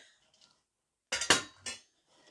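Küchenprofi stainless steel chicken roast rack set down on a countertop, its metal cone, wire frame and drip pan clinking and clattering in a short burst about a second in.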